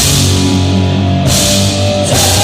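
Rock band playing loudly live, heard from the audience: electric guitars, bass guitar and drum kit with cymbals in an instrumental passage.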